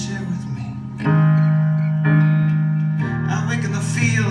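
Live band music from guitars and keyboard, heard from the audience: long held chords that swell louder about a second in and change again about a second before the end.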